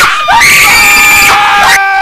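People screaming, several high-pitched voices overlapping in long, held screams with a brief break just after the start.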